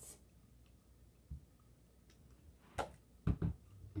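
Plastic toy cup and water bottle being handled, giving a few short knocks, the loudest pair near the end as the bottle is set down on a shelf.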